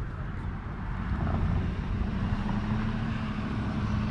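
A motor vehicle's engine running nearby: a low rumble that grows louder about a second in and settles into a steady low hum.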